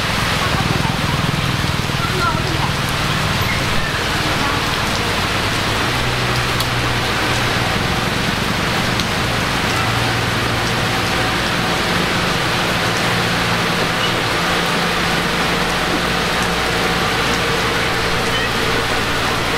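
Small bulldozer's diesel engine running steadily while it pushes dirt and stone, its low note shifting a few times, under a steady hiss of rain.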